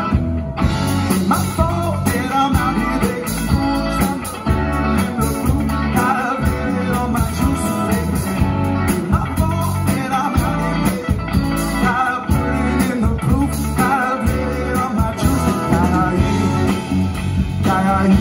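Live band playing amplified: electric guitars, bass and drum kit with a steady beat, and a lead vocal over the top.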